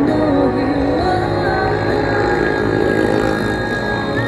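Female singer singing live into a handheld microphone, amplified, over backing music, in slow held notes.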